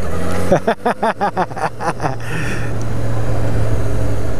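Honda NC700X parallel-twin engine running at riding speed with wind rush, heard from a helmet camera. Over it, in the first half, comes a quick run of short rising-and-falling vocal bursts from the rider. In the second half the engine hum settles and grows slightly louder.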